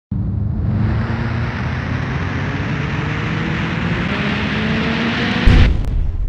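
Intro sound effect: a noisy rising whoosh that swells for about five seconds, then a loud booming impact hit near the end that starts to die away.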